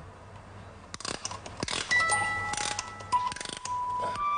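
A small gramophone-shaped wind-up music box being handled and wound: clusters of ratcheting clicks from about a second in, with the first bright, ringing notes of its comb sounding from about halfway through.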